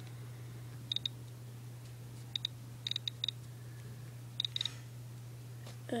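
Light clicks of a fingertip tapping and flicking across an iPod nano's touchscreen, in quick pairs and small clusters about four times, over a steady low hum.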